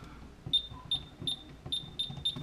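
A series of short, identical high-pitched electronic beeps, five in about a second and a half, slightly unevenly spaced, like buttons being pressed on a keypad.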